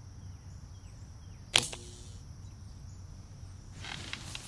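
A single sharp click about one and a half seconds in, over a steady low background hum and a faint steady high tone.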